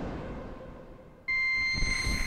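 Korg prologue-16 analog polyphonic synthesizer: one sound dies away in a fading noisy tail, then about a second and a quarter in a new sound cuts in abruptly as a steady, bright, high-pitched tone with a low rumble beneath it.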